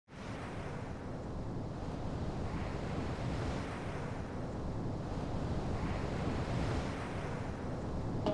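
Ocean surf: waves washing in, the sound rising and falling in slow swells every couple of seconds.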